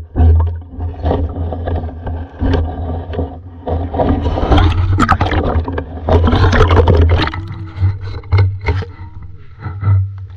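Water and camera-housing noise heard from a camera submerged in a shallow creek: a loud, uneven low rumble with scattered clicks and scrapes as the water moves around the housing.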